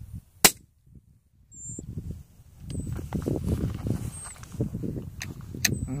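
A single sharp gunshot about half a second in, then a short hush. Later a fluctuating low rustle comes in, with short high chirps now and then.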